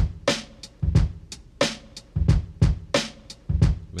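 A programmed boom-bap hip-hop drum loop playing back, a pattern of kick, snare and hi-hat hits, run through a Kramer Master Tape emulation plugin.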